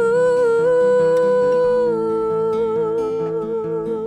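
A woman's voice singing long held notes without words over fingerpicked acoustic guitar in a slow folk song. The voice holds one note, drops to a slightly lower one about halfway through and wavers on it.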